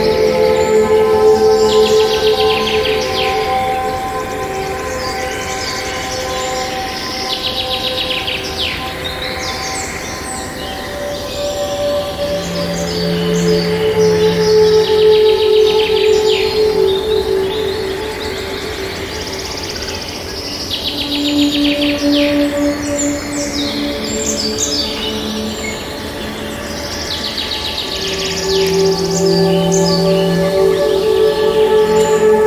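Small songbirds chirping and trilling in short, rapid clusters that return every few seconds, over calm music of long held notes that shift slowly.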